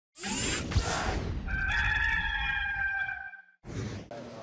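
Animated intro sting: a loud whooshing sweep with a sharp hit under a second in, then a rooster crowing in one long held call of nearly two seconds, and a short whoosh just before the end.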